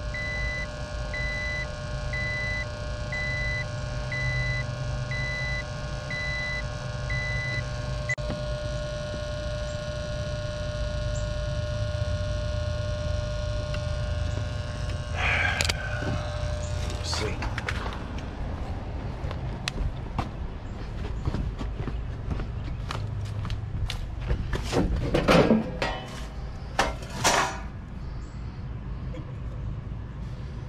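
A steady low electrical hum, with a high beep repeating a little more than once a second for the first eight seconds or so. Later come scattered clicks, knocks and rustles of handling, loudest near the end.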